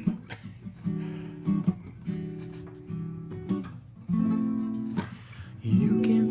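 Acoustic guitar playing slow strummed chords, a new chord struck about every one to two seconds and left to ring.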